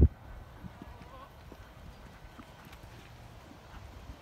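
Faint hoofbeats of a horse cantering on dirt arena footing: scattered soft thuds.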